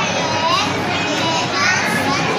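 Many children's voices talking at once, a steady hubbub of overlapping high-pitched chatter.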